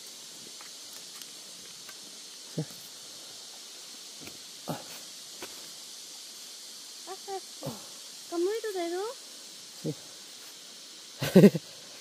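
Bark and wood cracking and snapping in a few short, sharp clicks as a hand pries open a small tree trunk to get at a wood-boring grub, over a steady high hiss of insects. Brief wavering vocal sounds come about two-thirds of the way in, and laughter near the end.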